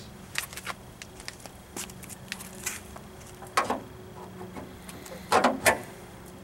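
Scattered light clicks and rattles of hands handling wires and plastic parts in a car's engine bay, with a few louder knocks about three and a half seconds in and near the end.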